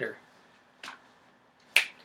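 Two sharp finger snaps about a second apart, the second louder.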